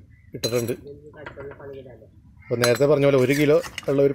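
A metal ladle clinking and scraping against cooking pots while curry is stirred and served, a few sharp clinks, with a person talking over it, the talking loudest in the second half.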